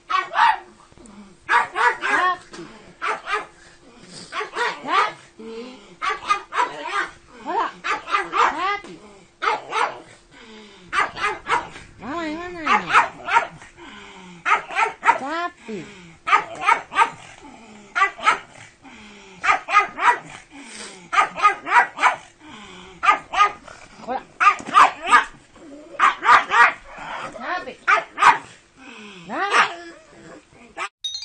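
A pug barking over and over in quick runs of short, sharp barks.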